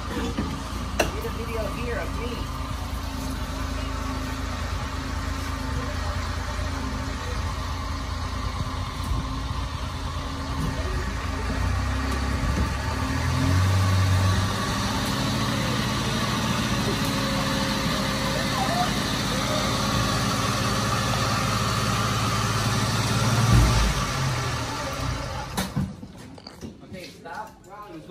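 A multicab mini truck's engine running steadily as it tows a boat on ropes in four-wheel-drive low range. It grows louder for a couple of seconds around the middle, and the engine sound drops away a couple of seconds before the end.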